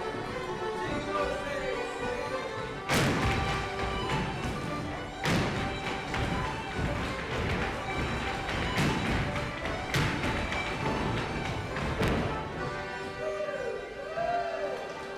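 Irish traditional music playing, broken about five times by loud stamps of dance shoes striking a hard floor, one to three seconds apart.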